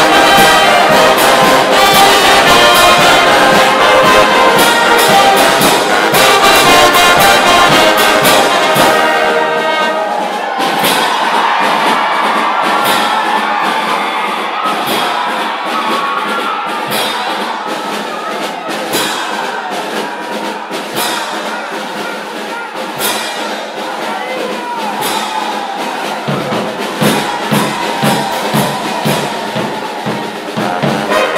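Brass band music with trumpets and trombones. About ten seconds in the bass and drums drop away and the music gets quieter and thinner, and a beat comes back in the low end near the end.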